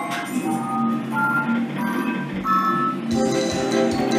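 Merkur slot machine playing electronic jingles as a free-spin win is counted up: short beeping notes at changing pitches, turning into a busier, faster run of repeated tones about three seconds in.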